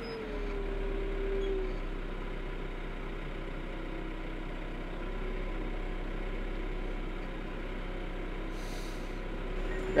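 Yanmar compact tractor's diesel engine running at low speed as the tractor creeps over soft, wet ground. A whine drops slightly in pitch over the first couple of seconds, then the engine settles to a steady drone.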